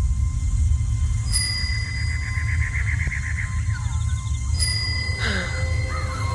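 Ominous film-trailer sound design: a deep, steady low rumble under thin, high ringing tones. About a second and a half in, the tones brighten into a fast warbling flutter, and a few short gliding sounds follow near the end.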